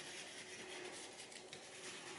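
Faint scratchy rubbing of a wax crayon being scribbled back and forth on paper.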